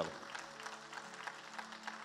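Soft keyboard chord held steadily, with faint scattered applause from a congregation.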